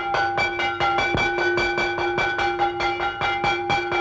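A bell rung rapidly and without a break, about seven strikes a second, its ring held between strikes.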